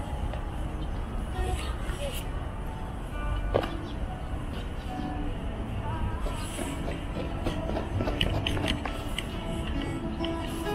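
Busy outdoor ambience: indistinct voices of people nearby over a steady low rumble, with music playing.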